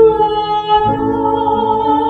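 A woman singing a slow hymn in long held notes over instrumental accompaniment; the accompanying chord changes about a second in.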